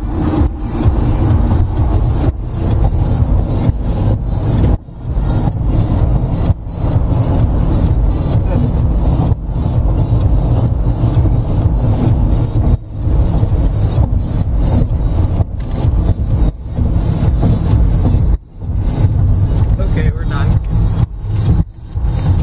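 Loud music with heavy bass playing on a car stereo inside the cabin, over the car's road noise; it cuts out briefly several times.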